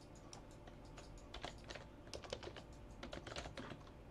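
Computer keyboard typing, faint: a quick run of light keystrokes as a short phrase is typed into a search field.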